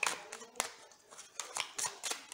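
A deck of tarot cards being shuffled by hand: a handful of crisp card snaps at uneven intervals as cards are slid and dropped onto the pack.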